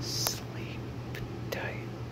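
Close-miked slow whispering, each syllable drawn out: a short hissing sound near the start, then soft mouth clicks and a faint breathy glide, over a steady low hum.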